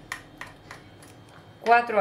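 A metal spoon clinking lightly against a mortar while scooping out crushed garlic paste. There are several small clicks about a third of a second apart.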